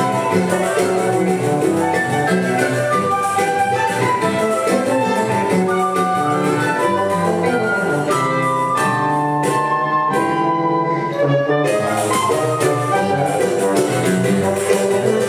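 A live choro ensemble playing an instrumental tune, melody lines over a low bass line carried by a tuba. About nine and a half seconds in, the texture thins to a few held notes for about two seconds, then the full band comes back in.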